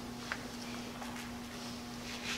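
Quiet room tone with a faint steady hum and a few soft clicks.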